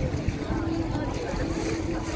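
Busy waterfront ambience: wind on the microphone and crowd voices, with a steady low hum starting about half a second in.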